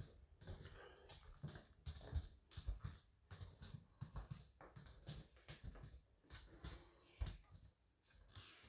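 Faint, soft footsteps on a wooden floor, about two a second, with small clicks and rustles from a handheld phone.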